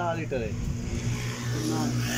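A vehicle engine running steadily at an even pitch, with brief bits of a man's speech at the start and near the end.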